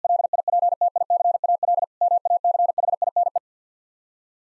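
Morse code sent at 50 words per minute as a single mid-pitched tone keyed in rapid dits and dahs, spelling 'elliptical machine'. A longer run of code breaks briefly about two seconds in for the space between the words, then a shorter run follows and stops about three and a half seconds in.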